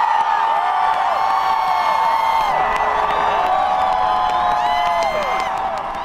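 A huge outdoor crowd cheering, with many overlapping whoops rising and falling in pitch.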